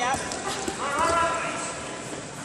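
Quick thuds of wrestlers' feet and bodies hitting a foam wrestling mat during a leg-attack takedown, under excited shouting from coaches and spectators, with one long shout about a second in.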